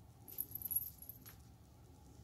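Small fine-tipped plastic craft glue bottle being squeezed: a brief, faint, high-pitched hiss and squeak lasting about a second, ending in a light click.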